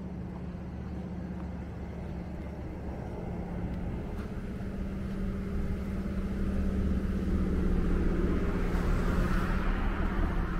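A motor vehicle's engine running at a steady pitch, growing louder, with a car going by on the road near the end.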